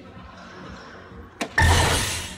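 A soft-tip dart hits the electronic dartboard with a sharp click about one and a half seconds in. The dart machine answers at once with a loud electronic hit sound effect, scoring the throw as a triple 18.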